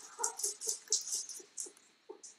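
A small pet animal giving a quick series of short, high cries, about five a second, fading out near the end.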